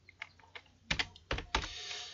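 Computer keyboard being typed on: a handful of separate keystrokes, the loudest about a second in, with a soft hiss near the end.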